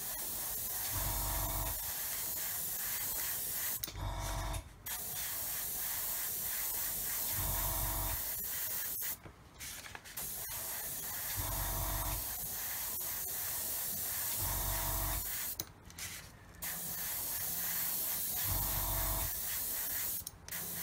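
Airbrush spraying thinned semi-gloss black acrylic at about 15 psi, a steady hiss of air and paint that stops briefly three times as the trigger is released. A short low hum recurs about every three and a half seconds.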